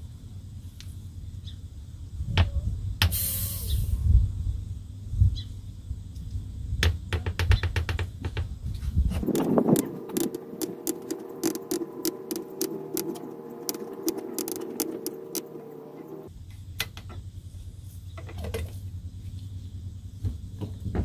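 Side-cut can opener being cranked around the rim of an aerosol shellac can, clicking as it cuts through the metal, with a short hiss of leftover propellant escaping about three seconds in. A steady pitched tone runs through the middle of the cranking.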